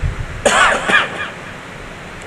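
A man clearing his throat into a microphone: one short burst about half a second in.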